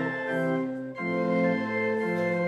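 Organ playing a hymn tune in sustained chords, with a brief break between phrases about a second in before the next chord.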